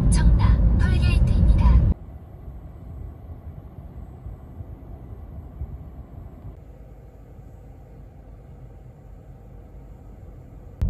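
A voice for about two seconds, cut off abruptly. It is followed by the steady low rumble of a car driving on the road, heard from inside the car.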